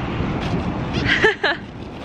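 Steady rumble of highway traffic with wind on the microphone. A brief voice-like sound comes about a second in.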